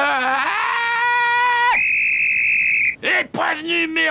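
A cartoon character's long, loud scream whose pitch rises and then holds. About 1.7 s in it jumps to a thin, piercing high tone that lasts about a second. Choppy yelling follows near the end.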